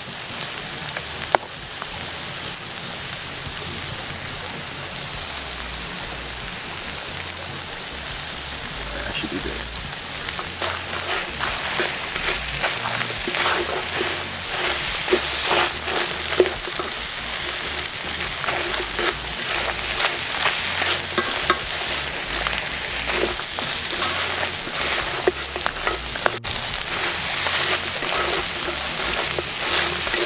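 Crawfish sizzling in a cast-iron skillet, with a wooden spatula scraping and knocking against the pan as they are stirred. The stirring clicks come thick from about ten seconds in.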